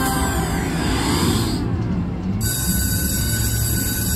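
Electronic sound effects and music from an IGT Hot Hit Pepper Pays slot machine: criss-crossing tones sweeping up and down in pitch for about a second and a half, then steady held tones from about halfway through, as the game passes from its win total into the bonus awards.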